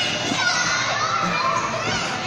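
Many children shouting and calling out at play at once, a steady babble of high voices in a large indoor soft play hall.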